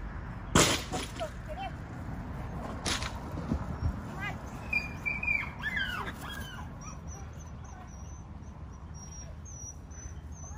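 Agility teeter (seesaw) board banging down onto its base under the dog, about half a second in, with a second, lighter knock a couple of seconds later. Birds chirp in the middle.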